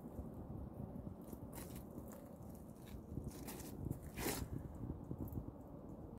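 Faint handling and movement noise, with a few scattered light clicks and crackles, the loudest a little past the middle.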